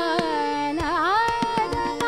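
Female Hindustani khayal singing in Raag Shankara: a gliding, ornamented phrase with a quick wavering shake about a second in, settling onto a held note. Tabla strokes, harmonium and a tanpura drone accompany it.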